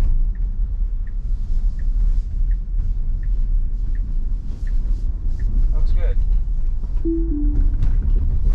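Road and tyre rumble inside a Tesla Model Y cabin, with the turn signal ticking about once every 0.7 seconds for the first five seconds or so. About seven seconds in comes a short two-note falling chime, the sound of Autopilot (FSD Beta) being disengaged by the driver.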